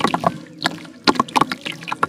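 Lumps of wet red dirt crumbling between the fingers, the crumbs and grains dropping and splashing into a tub of muddy water in quick, irregular patters.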